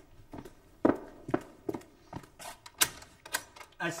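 Footsteps on a hard floor, a string of sharp steps about two or three a second, as a person walks across a room.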